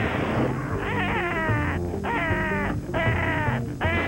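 Cartoon soundtrack: music with a harsh, swooping cry repeated about three times, each cry about a second long, starting about half a second in.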